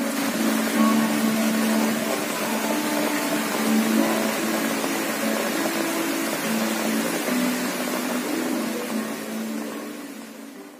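Steady rain falling on dense leaves, a continuous hiss, with soft background music of slow low held notes laid over it.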